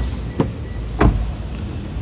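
Two short knocks, the second louder, about a second in, over a steady low hum: handling knocks as the car's door and trim are touched.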